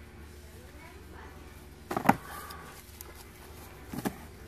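Cardboard firework tubes knocking as they are taken off and handled on a store shelf: one sharp knock about two seconds in and a smaller one at the end, over a steady low hum.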